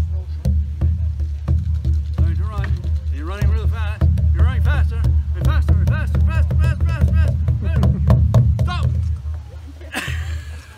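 Large rawhide-headed hand drum beaten rapidly by two children with padded beaters, a fast run of deep beats imitating running that starts suddenly.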